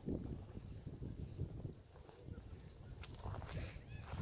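Wind buffeting a phone's microphone: a faint, uneven low rumble.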